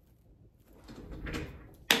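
Handling noise of a camera being picked up and repositioned: a soft rustling shuffle, then a single sharp knock near the end as it is set in place.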